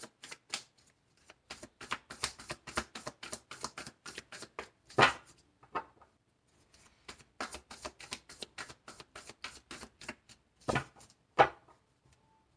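Tarot deck being shuffled overhand: a quick run of soft card slaps, with a quieter gap just after the middle and a few louder knocks, one about five seconds in and two near the end.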